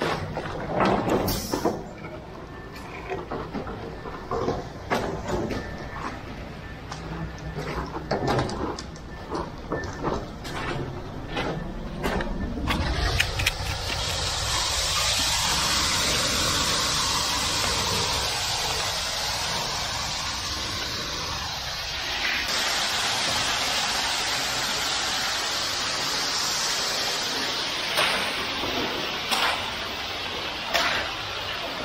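Wet ready-mix concrete running down a metal chute onto a basement floor while rakes and shovels scrape through it. From about halfway a steady rushing hiss takes over as the flow of concrete picks up.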